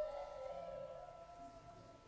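Mallet-percussion notes, glockenspiel-like, ringing on and slowly dying away, under a soft wavering tone that slides up and down in pitch and fades out.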